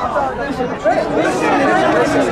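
Several voices calling and shouting over one another, the players and onlookers at a football match, with no single clear word.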